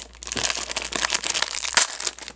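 Foil blind-bag packet crinkling as it is torn open by hand: a dense run of sharp crackles, the loudest near the end.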